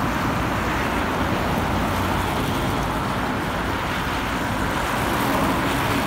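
Steady city road traffic: cars driving past, a continuous wash of tyre and engine noise.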